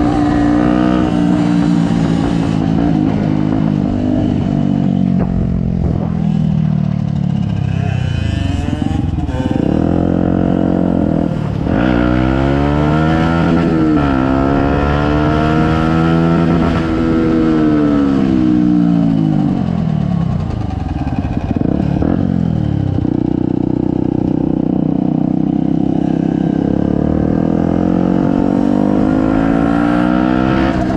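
Small motorcycle engine heard from the rider's seat while riding: it holds a steady pitch at first, then through the middle drops and climbs again several times as the throttle is closed and opened and gears change, and settles into a steady pitch again near the end.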